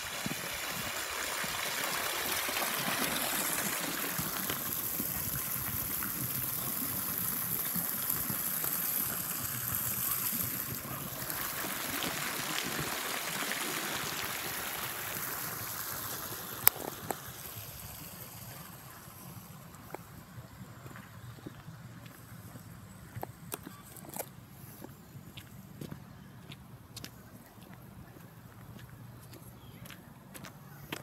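Garden fountain's water jet splashing into its basin, a steady splashing that fades away over the second half. One sharp click comes about halfway through, and a few faint clicks follow.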